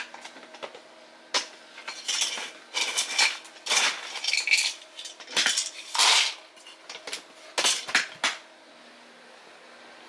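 Small hard objects clinking and clattering as they are handled and set down: a run of sharp knocks and short rattles that stops about eight seconds in. A steady low electrical hum runs underneath.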